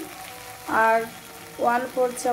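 Spice paste sizzling quietly as it fries in a metal pan. A voice breaks in twice, about three-quarters of a second in and again near the end, louder than the sizzle.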